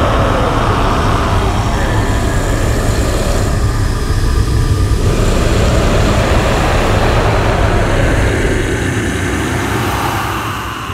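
Massed growling voices of an extreme-vocal choir forming a loud, dense rumbling wall of sound, with slow pitch glides near the start and end.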